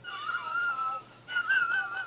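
A high, wavering whistle-like tone, sounded twice: the first about a second long, then after a short pause a second one with a slight warble.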